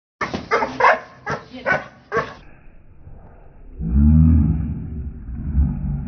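Doberman Pinscher barking in a quick run of about six barks over two seconds. About four seconds in, a deep, low growl follows.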